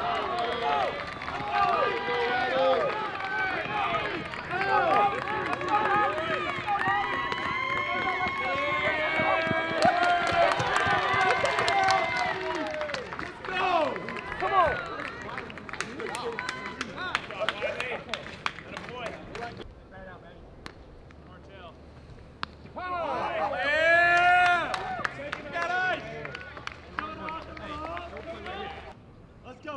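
Many voices of spectators and players yelling and cheering over each other, with scattered claps, as two runs score on a base hit in a youth baseball game. The shouting fades after about thirteen seconds, then a second short burst of cheering comes a few seconds before the end.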